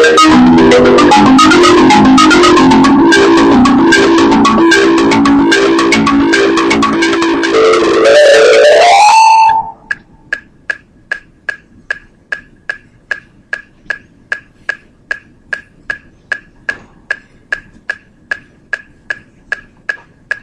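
Marimba played fast with mallets, many notes at once, ending in a rising run of notes and stopping about halfway through. After that a metronome ticks steadily at 150 beats per minute, about two and a half clicks a second.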